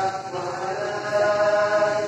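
A voice chanting a melodic Islamic recitation in long, wavering notes, holding one long steady note through the second half.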